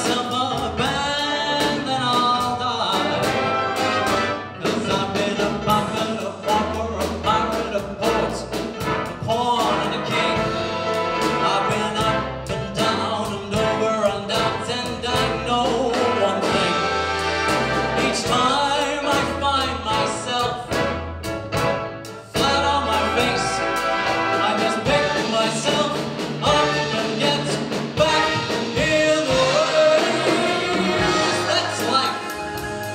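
Live big band with saxophones, brass, drums and piano playing a swing arrangement, with a male voice singing over parts of it. The sound briefly drops away about two thirds of the way through, then the full band comes straight back in.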